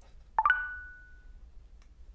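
A short electronic chime from a smartphone: three quick notes rising in pitch, the highest one ringing on for about a second.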